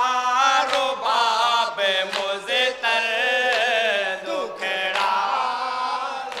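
Group of men chanting a noha, a Shia Muharram lament, in unison into microphones: long sustained sung lines with short breaks between phrases.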